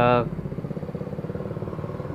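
A small engine running steadily in the background, with a rapid, even pulsing beat.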